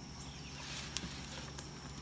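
Quiet outdoor background: a faint steady hum with a thin high steady tone over it, and a couple of soft clicks about a second in.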